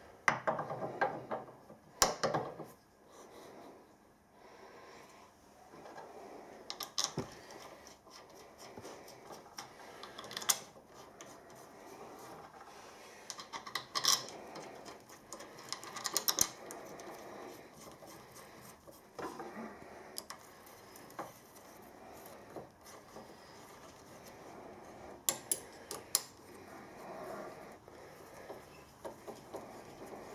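Steel boring-head parts and Allen cap screws being handled and fitted together by hand: scattered light clicks and metal-on-metal clinks over soft rubbing and handling noise.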